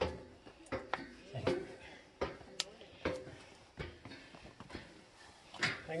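Footsteps clanking on metal checker-plate stair treads as someone climbs, a step a little under a second apart.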